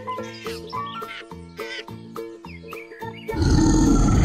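Bright children's background music with a steady beat of short notes; near the end a loud lion roar breaks in over it and is the loudest sound.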